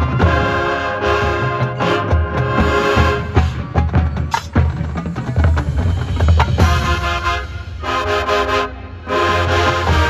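Marching band playing live: brass sustained chords over bass drums, giving way to a stretch of drum hits in the middle, with the brass chords coming back in about two-thirds through and again after a brief break near the end.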